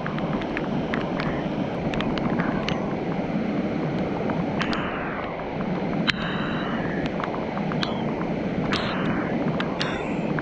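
Steady rush of a small, fast stream running over riffles and a low cascade. Many light, sharp ticks are scattered through it, with a few brief hissy streaks.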